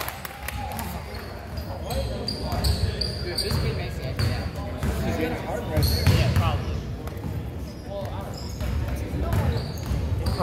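A basketball being dribbled on a hardwood gym floor, repeated bounces, with voices of players and spectators in the background.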